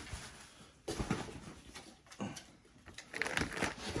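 Plastic snack packets and a cardboard box being handled: a few soft rustles and crinkles, growing busier near the end.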